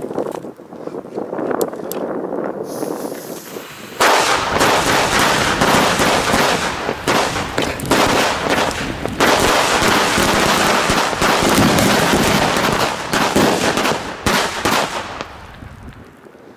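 A firecracker chain going off: from about four seconds in, a rapid, unbroken string of loud bangs runs for about eleven seconds, then thins out and stops near the end.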